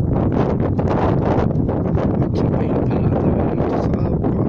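Wind buffeting a phone's microphone: a loud, steady rumble with irregular gusty crackles throughout.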